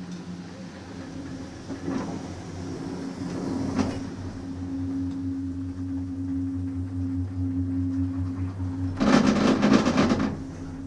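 Doppelmayr detachable chair-gondola lift heard from a moving chair: a steady hum with a few faint clicks, then a loud clattering rumble for about a second near the end as the carrier's grip rolls over a line tower's sheaves.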